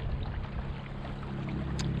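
Choppy water lapping and splashing against the hull of a motorized Old Town Predator MK kayak under way, over a steady low hum from its electric motor. A single short click near the end.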